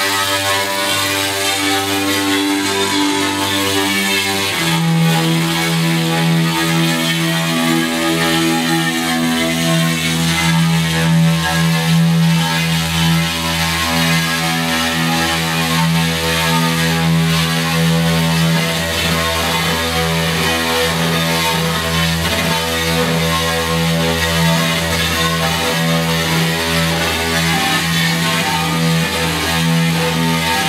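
Instrumental music played live: an electric guitar over a sustained electronic backing, held low tones under it; the low note drops about four and a half seconds in.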